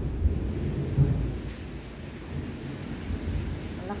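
Strong thunder rumbling over heavy rain. It is loudest in the first second or so, then dies down to a lower rumble.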